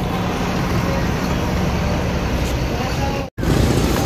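Steady outdoor background noise like road traffic, with faint voices. It cuts out suddenly for a moment a little over three seconds in.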